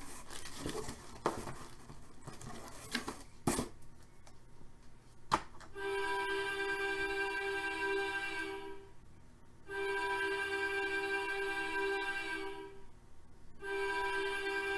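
A few clicks and knocks as a cardboard box lid and a plastic puck cube are handled. About six seconds in, a steady horn-like chord begins, sounding in blasts of about three seconds with short breaks between them.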